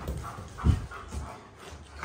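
Alaskan Malamute making short vocal sounds during rough play.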